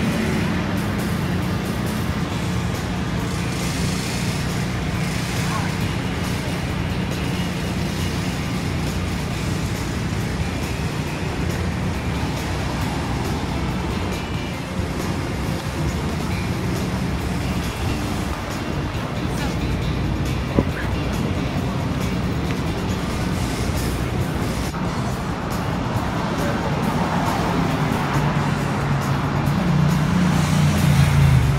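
Busy downtown street: steady car and bus traffic with voices and music mixed in.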